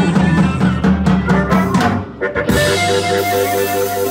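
Live electric blues band playing with drum kit, electric bass and guitar; about two and a half seconds in, a harmonica comes in with a held chord over the band.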